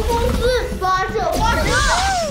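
Cartoon character voices speaking Mandarin in high, gliding tones, over a low steady rumble.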